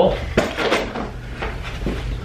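A quick run of clattering knocks and clinks as hard objects are picked up and handled, over a low steady hum.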